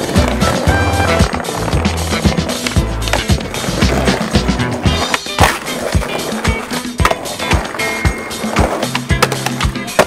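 Skateboard wheels rolling on asphalt with repeated sharp clacks of the board popping and landing, over a music track with a steady bass line.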